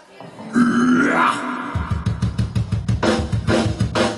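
Live heavy rock band: a loud, distorted growling sound that slides down in pitch, then a fast run of drum strokes with cymbal crashes.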